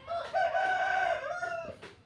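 A rooster crowing once: a single call about a second and a half long that rises, holds steady and falls away at the end.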